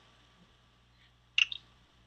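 Near silence, broken once about a second and a half in by a brief mouth noise, a lip smack, just before someone speaks.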